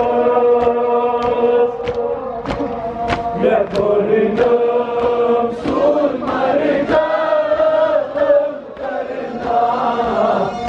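Male voices chanting a Kashmiri noha, a Muharram mourning lament, through microphones in long held, sliding notes. Under the chant runs an even beat of chest-beating (matam), about three strikes every two seconds.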